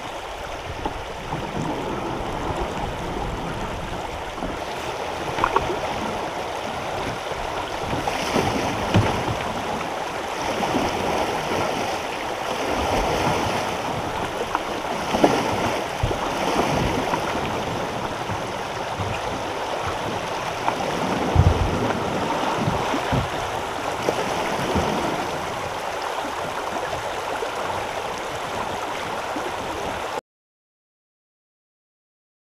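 Shallow river riffle rushing steadily over rocks, with a kayak paddle splashing through it. A few sharp knocks stand out from the water at intervals.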